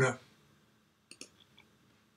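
A couple of quick, faint computer-mouse clicks about a second in, in a near-silent room.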